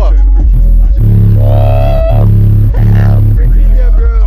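Hip hop music played loud through two Skar Audio subwoofers wired at a 1 ohm load, heard inside the car's cabin. A deep bass runs under it, with a run of heavier bass notes from about a second in, and a melodic vocal line that falls away near the middle.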